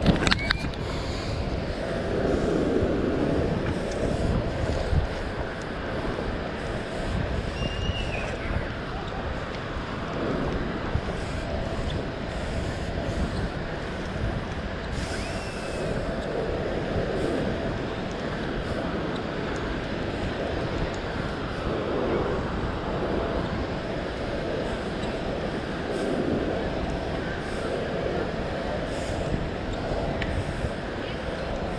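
Steady wind noise on the microphone over outdoor beach background noise, swelling softly every few seconds, with two faint short chirps about eight and fifteen seconds in.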